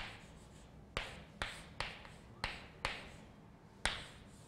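Chalk writing on a blackboard: about six sharp taps as the chalk strikes the board, each trailing off into a brief scratch of the stroke.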